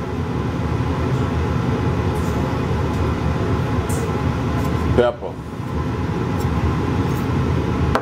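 Two eggs frying in a nonstick skillet, a steady sizzle. About five seconds in the sizzle briefly dips and a short vocal sound is heard.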